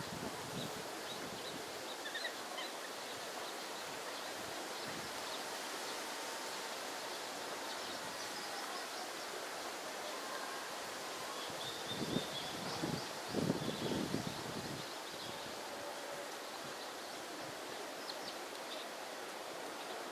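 Steady outdoor background hiss with faint, scattered high bird chirps. A few low thumps come a little past the middle.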